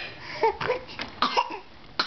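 A baby giving several short coughs in quick succession.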